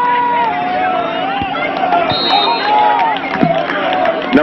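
A football crowd and sideline players yelling and cheering during a play, many voices overlapping at once, over a steady low hum.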